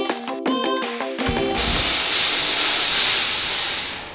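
A short musical sting of pitched notes for about the first second. Then a loud, steady hiss of a fog machine pushing out smoke, which fades near the end.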